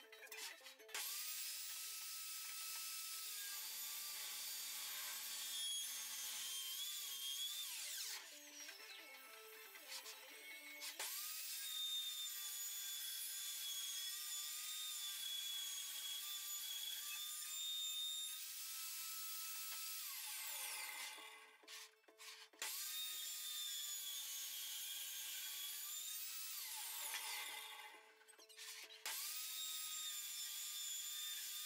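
Evolution R255PTS table saw running with a steady high whine while its blade rips a thick softwood board. The whine falls in pitch and dies away three times, and each time it comes back up to speed.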